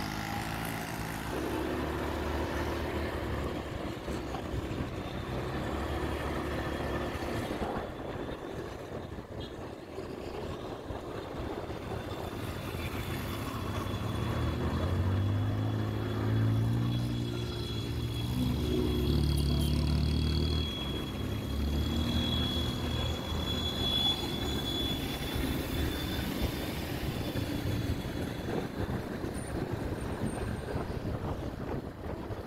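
Motorcycle engine running on the move, its pitch rising and falling several times with the throttle, with road and wind noise.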